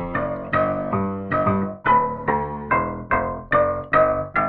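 Impact Soundworks Water Piano, a sampled grand piano filled with water, played from a keyboard. Single notes and chords are struck about two to three times a second in a slow phrase, each fading as the next comes in.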